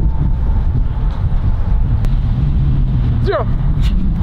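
A steady low rumble throughout, with one sharp knock about two seconds in: a football being struck.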